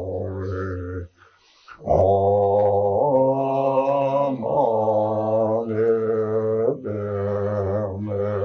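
A deep male voice chanting a Tibetan Buddhist liturgy in long, low, sustained tones, with a short pause for breath about a second in.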